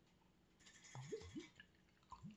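Very faint pouring of root beer from a glass bottle into a glass measuring cup, with two short rising glug-like sounds about a second in.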